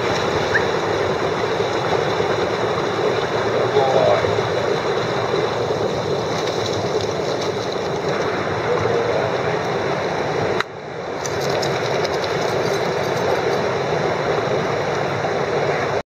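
Mountain stream water rushing steadily over rocks, with a sudden brief drop in level about two-thirds of the way through.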